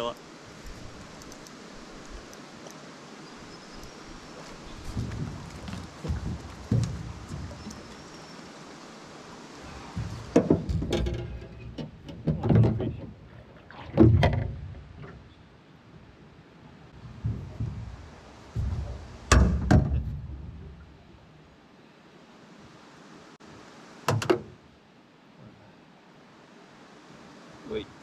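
Irregular thuds and knocks against an aluminium boat as a hooked brown trout is brought to the side, netted and handled, over a steady hiss of water. The knocks bunch up in the middle and die away near the end.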